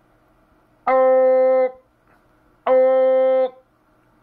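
A man's voice holding a steady, unwavering "ohhh" twice, each for just under a second, into a CB radio microphone to modulate the transmitter on AM for a power reading.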